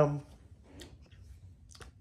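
A man's drawn-out "um" trailing off, then quiet with a few faint clicks: one near the middle and a couple close together near the end.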